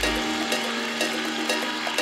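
Live worship band music in a thinning passage: the deep bass drops out just after the start, leaving a held note with light percussion strikes over a steady high hiss.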